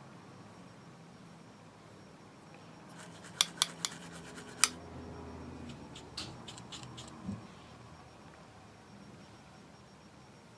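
A makeup brush's plastic handle clicking and tapping against a plastic eyeshadow palette: four sharp clicks about three and a half to five seconds in, the last the loudest, then a few lighter taps around six to seven seconds.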